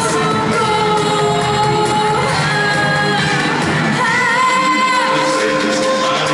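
A singer performing a pop song live over backing music through a PA system, with long held notes, echoing in a large hall.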